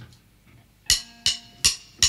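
A drummer's count-in: sharp, evenly spaced strikes with a short ring, about 0.4 s apart, three starting about a second in and a fourth right at the end.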